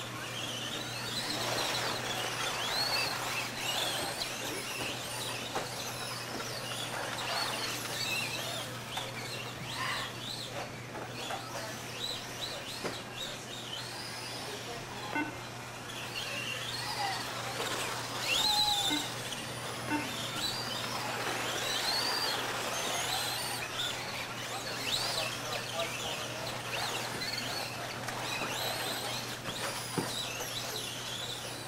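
Several radio-controlled off-road cars racing on a dirt track, their motors and gears whining up and down in quick rising and falling sweeps as they speed up and slow for the turns, over a steady low hum.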